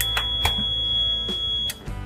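Microcontroller relay board powering up. Its buzzer gives one steady high beep of a little under two seconds, while the relays click several times as the bulb loads switch on and then off.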